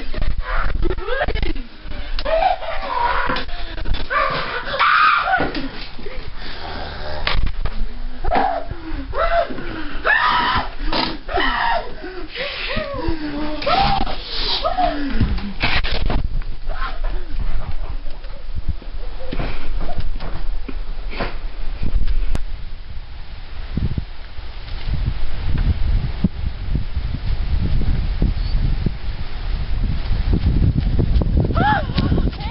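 A person's voice making wordless yelps and cries that slide up and down in pitch through roughly the first half, followed by rougher noise with a low rumble building near the end.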